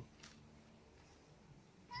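Near silence: faint outdoor background, with one brief faint high hiss about a quarter of a second in.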